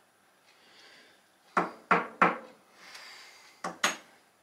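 A metal golf divot tool knocking against a scratchcard on a table: three sharp taps about a third of a second apart in the middle, then two quick knocks near the end as it is laid down, with a faint rasp between.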